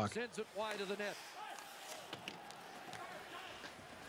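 A faint voice talking for about the first second, then low background noise with a few faint knocks.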